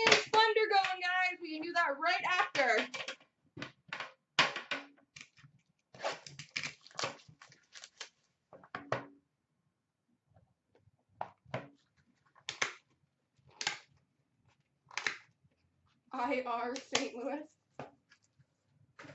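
Hands handling a hockey card box and its packs: a string of short, scattered clicks, taps and crinkles of card and packaging. A voice talks at the start and briefly near the end.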